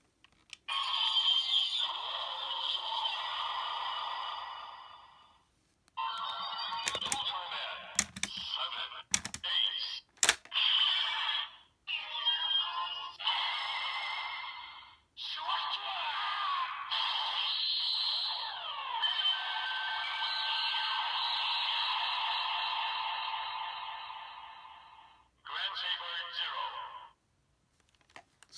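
Bandai DX Ultraman Z role-play toy playing its electronic voice calls, sound effects and music through its small, tinny speaker, in several stretches with short pauses between and the longest run in the second half. Sharp plastic clicks from working the toy come in a few times in the first half.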